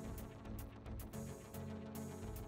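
Background electronic music with a steady beat.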